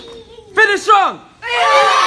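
Two loud yells with falling pitch, then from about a second and a half in a group of martial arts students shouting and cheering together.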